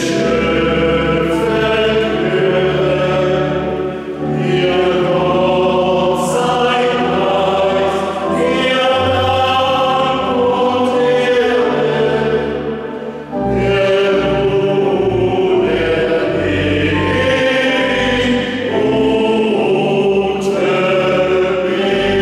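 A men's choir singing a slow hymn-like song in several parts, in phrases with brief breaks, with a pipe organ accompanying.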